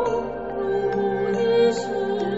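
Buddhist devotional chant music: a slow sung melody held on long notes with vibrato, over soft sustained instrumental accompaniment.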